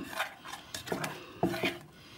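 Fingers stirring a runny health-mix dosa batter in a small stainless steel bowl, with a few light knocks and clinks against the metal.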